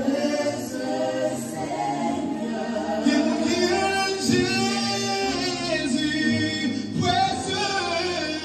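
Choir singing, several voices together holding long notes.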